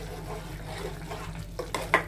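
A metal spoon stirring thick curry in an aluminium pot, with a soft wet churning sound. It ends in a couple of sharp scrapes or clinks of the spoon against the pot near the end.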